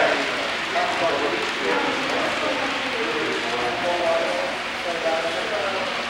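Indistinct talking of several people at once, without clear words, over a steady background hiss.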